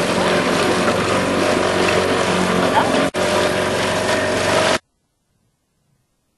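Motorboat engine running steadily under way, with water and rushing air mixed in. It drops out for an instant a little after three seconds, then cuts off suddenly to silence near the end.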